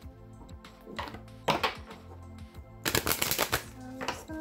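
A deck of oracle cards being shuffled by hand: a single sharp snap about a second and a half in, then a quick rapid flurry of card clicks about three seconds in, over soft background music.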